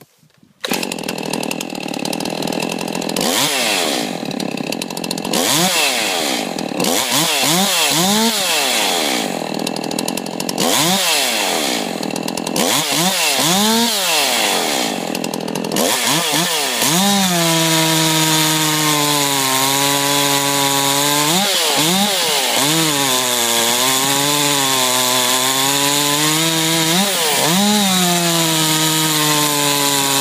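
A modified Stihl chainsaw starts up about a second in and is blipped through a series of quick revs, then about halfway through is held at full throttle and cuts into a log round, its pitch dipping and recovering as the chain bites.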